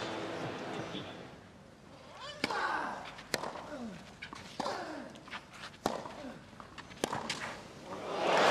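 Tennis rally on a clay court: the ball is struck by rackets about five times, a second or so apart, each hit a sharp crack. Several hits are followed by a player's short, falling grunt.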